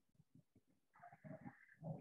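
Near silence: room tone, with a faint, brief sound about a second in.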